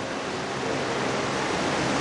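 A steady, even hiss of background noise, with no speech.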